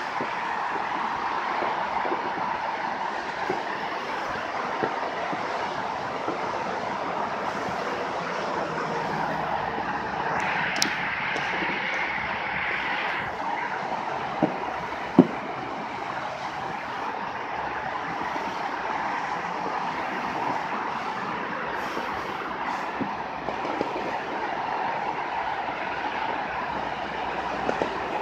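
Steady hum of distant traffic, with a few sharp far-off pops of fireworks; the loudest pop comes about fifteen seconds in.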